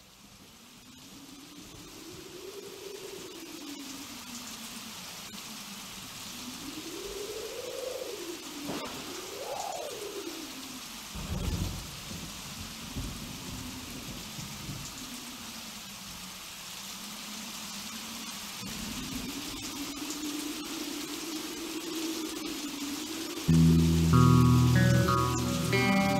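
Rain and thunder intro to a rock song, fading in: steady rain hiss under a slow, eerie tone that glides up and down, with a thunder rumble about halfway through. Near the end a rock band comes in with guitar and bass.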